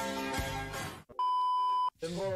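Background music that cuts off about a second in, followed by a single steady electronic beep lasting under a second, a sound-effect bleep of the kind edits use to censor a word.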